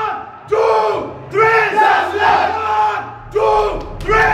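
A football team shouting a rallying chant in unison in a huddle: loud group shouts repeated roughly once a second.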